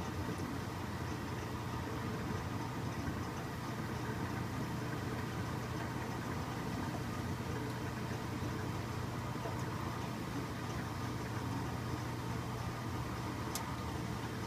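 1966 Philco Flex-A-Wash top-loading washing machine in its wash agitation: a steady motor hum with the water and suds churning in the tub.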